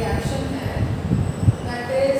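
A duster being rubbed in repeated strokes across a whiteboard to wipe it clean, heard as an irregular scrubbing noise. A few sounds of a woman's voice come near the end.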